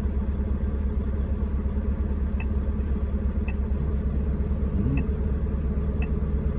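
Truck engine idling, heard from inside the cab as a steady low rumble, with a few short beeps from the GPS touchscreen as its menu buttons are tapped.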